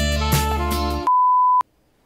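Music with saxophone and drums cuts off about halfway through, replaced by a single steady bleep tone that lasts about half a second and stops abruptly.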